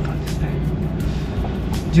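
Cabin sound of a new Subaru BRZ's 2.4-litre FA24 flat-four, fitted with an aftermarket exhaust, running at low revs as the car creeps forward at walking pace off the clutch alone: a steady low drone.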